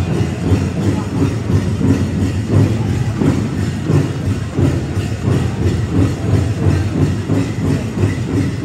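Powwow drum group playing a steady, even drumbeat with singing, the live song for a men's traditional dance contest.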